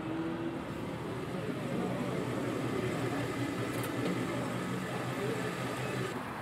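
Car engine running at a low, steady idle.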